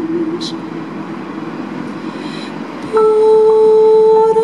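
Female singer holding a sung note with vibrato that ends about half a second in. After a quieter gap with a breath, she comes in sharply on a new, higher held note near the end, over live electric keyboard accompaniment.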